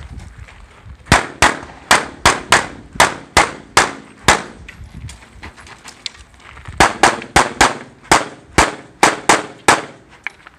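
9mm CZ 75 SP-01 semi-automatic pistol firing about eighteen shots in quick strings of roughly three shots a second, with a pause of about two and a half seconds midway while the shooter moves between positions.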